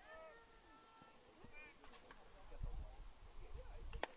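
A faint, distant, high-pitched shouted call held for about a second, then a brief higher call a moment later, with a low rumble near the end.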